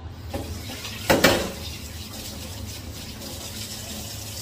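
Kitchen tap running into the sink while dishes are washed, with one loud sharp clatter about a second in.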